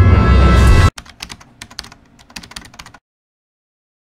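The tail of a channel intro music sting, loud with a heavy bass, cuts off abruptly about a second in. It is followed by about two seconds of faint, rapid, irregular clicks from a keyboard-typing sound effect.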